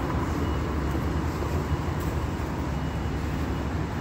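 Steady city street traffic noise from cars on a multi-lane road, mostly a low rumble with no distinct events.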